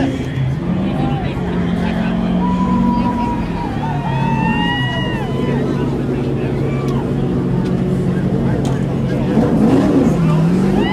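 Steady low engine drone with shifts in pitch, under the chatter and calls of a crowd of voices.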